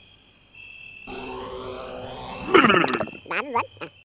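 Cartoon sound track: nearly silent at first, then a soft swelling sound about a second in, followed near the end by a character's short, wordless grunting vocal sounds with a wobbling pitch.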